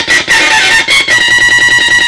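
Synthrotek Mega 4093 drone synth, four 555 timers driving a 4093 NAND-gate chip, putting out a loud, chaotic electronic drone. About a second in it settles into a steady high buzzing pitch with a rapid pulse.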